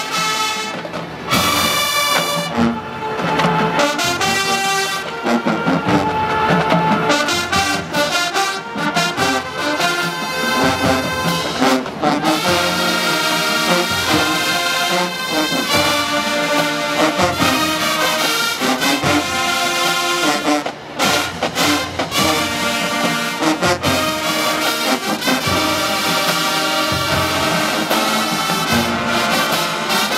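Marching band's brass section playing a loud, continuous tune, led by trombones and trumpets.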